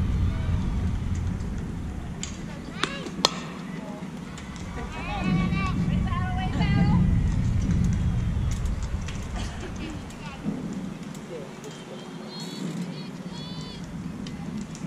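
A sharp crack of a softball bat striking the ball about three seconds in. Shouting and cheering voices follow, with low wind rumble on the microphone early on.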